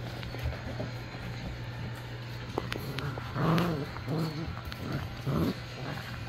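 Bullmastiff puppy giving four short pitched calls in quick succession, rising and falling in pitch, during play, over a steady low hum.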